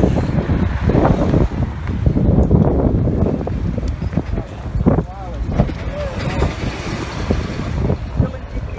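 Street sound heard on a phone microphone while walking: passing traffic under the constant rumble and buffeting of wind on the microphone. Voices of people nearby come through about five and six seconds in.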